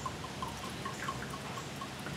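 Brandy poured from a glass bottle into a small stemmed tasting glass: a faint trickle with a quick run of small blips, about five a second.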